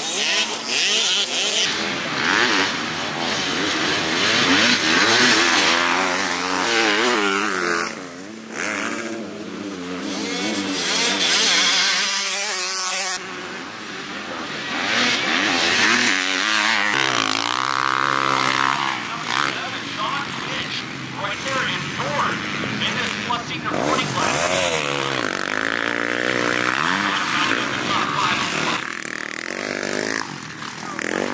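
Motocross dirt bikes running on a track, engines revving up and down as the riders accelerate, shift and jump, with the pitch rising and falling again and again. The sound changes abruptly a few times.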